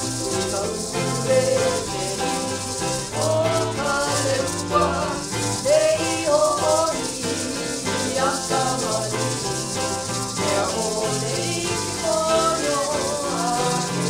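Hawaiian hula song: a voice sings a wavering melody over a bass line, with the steady shaking of ʻulīʻulī feathered gourd rattles.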